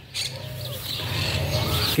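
Garden birds chirping in the background, over a low steady hum.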